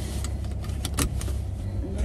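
Car interior noise: a steady low engine and road hum, with a few light, irregular clicks and rattles in the first second or so.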